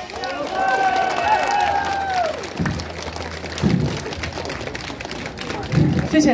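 Audience clapping as the band's music stops, with voices calling out over the applause.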